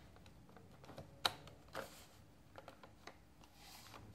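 Plastic set squares being slid and set down on a drawing board: light scraping and small clicks, with one sharper click a little over a second in.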